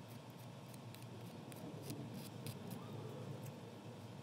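Quick short strokes of a mini nail file (emery board) rasping the plastic edge of a press-on nail tip, about three a second, stopping shortly before the end. This is the cuticle end of an oversized press-on being filed down to fit the nail.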